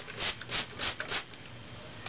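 Hands working through wet curly hair while putting it up with a clip: a quick run of about five short rustling swishes in the first second or so, then quieter.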